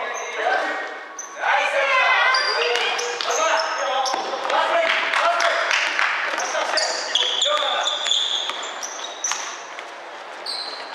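Basketball game sounds in a gym hall: players shouting and calling to each other, the ball bouncing on the wooden floor, and sneakers squeaking in short high chirps, one longer squeal near the end.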